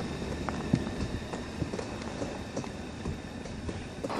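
Faint, irregular small clicks and taps over a low, steady hiss.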